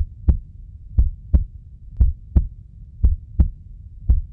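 Heartbeat sound effect: four double thumps, lub-dub, about once a second, over a faint low hum.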